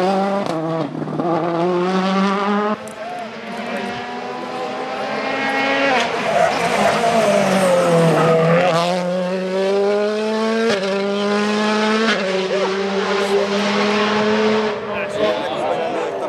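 World Rally Cars on a tarmac stage at full throttle. The engine note climbs through the gears and drops sharply at each change, slows and picks up again near the middle, with sharp cracks and some tire squeal.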